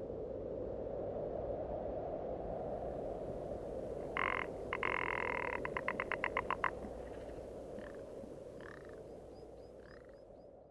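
Rock ptarmigan calling over a steady cold wind. About four seconds in come two short croaks, then a fast rattle of about ten clicks in a second, followed by a few fainter croaks. The wind eases toward the end.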